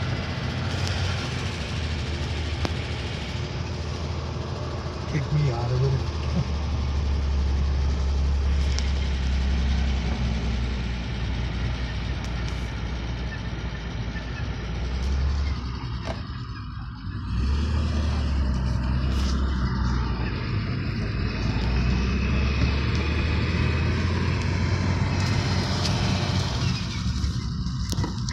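Engine of a 1938 Graham Sharknose, a supercharged straight-six, heard from inside the cabin while driving, with road noise. The engine note eases off briefly a little past the middle, then pulls again.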